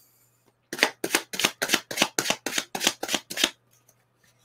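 Tarot deck being shuffled by hand: a quick run of about a dozen sharp card slaps, about four a second, starting under a second in and stopping about three and a half seconds in.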